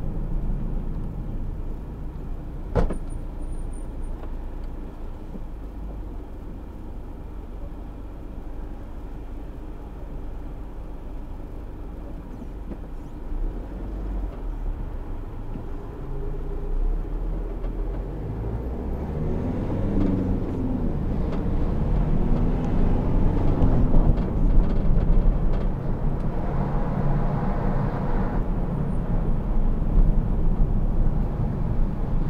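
Car engine and road noise heard inside the cabin, a steady low rumble with a single sharp click about three seconds in. In the second half the engine note rises and falls in pitch and grows louder as the car pulls away and gathers speed.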